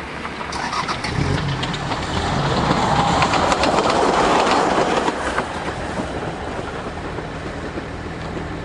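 Short passenger train passing close by on the rails: its running hum and wheel clicks over the rail joints grow louder to a peak about three to five seconds in, then fade as it moves away.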